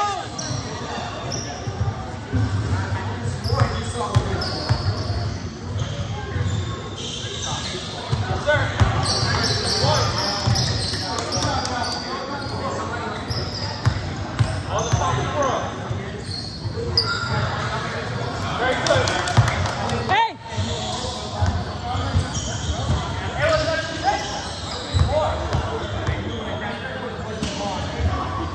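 Basketball bouncing on a hardwood gym floor amid players' voices, echoing in a large gym hall.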